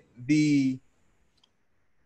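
A man says one short word, then there is near silence (room tone) for just over a second.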